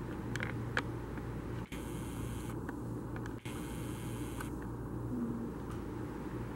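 Steady room hum and hiss, with a few faint ticks in the first second. Twice, about two seconds in and again about three and a half seconds in, there is a short stretch of high whirring that fits the camcorder's zoom motor as it zooms in.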